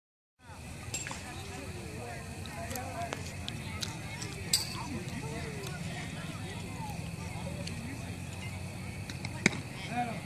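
Indistinct chatter of players and spectators at a baseball field over a steady low hum, broken by a few sharp clicks, the loudest about nine and a half seconds in.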